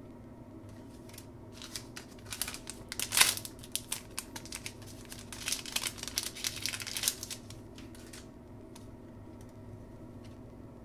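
Shiny plastic wrapper of a trading-card pack crinkling and being torn open by hand: a run of crackles and rustles from about a second in until about eight seconds in, loudest near three seconds.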